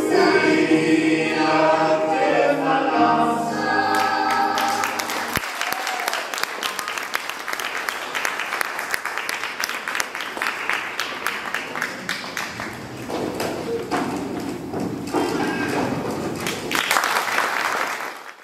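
A mixed choir sings the last phrase of a song, then an audience applauds, clapping from about four seconds in until the end.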